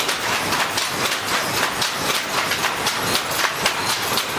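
Looms in a hand loom weaving shed clattering: a dense, steady, overlapping run of wooden clacks and knocks, several looms working at once.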